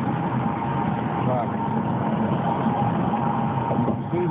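Steady road and wind noise inside a car travelling at highway speed.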